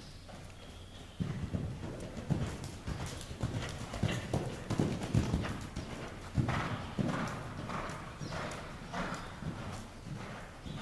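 Hoofbeats of a cantering Thoroughbred gelding on the sand footing of an indoor arena, beginning about a second in and going on in a steady stride rhythm as the horse comes close.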